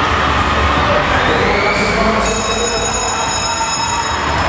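Arena crowd cheering in a steady din. About two seconds in, a bell starts ringing and keeps going: the last-lap bell of a short track speed skating race.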